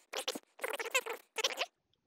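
Computer mouse scroll wheel turned in four short scratchy bursts, zooming the CAD view.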